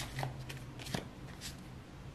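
Tarot cards being handled as a card is drawn from the deck: a few soft, short card snaps and slides.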